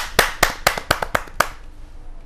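Audience applauding in steady, even claps, about four a second, that stop about one and a half seconds in.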